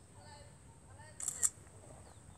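A quick double click: two sharp snaps about a fifth of a second apart, over a faint steady high whine.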